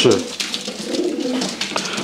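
Pigeons cooing softly in the background, a low wavering call that is plain once the voice stops.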